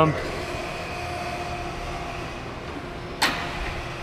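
Okamoto surface grinder's hydraulic pump running with a steady hum. A single sharp click comes about three seconds in.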